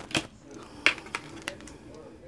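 Oracle cards being handled on a tabletop: a few light, scattered clicks and taps as one card is set down and the next is picked up.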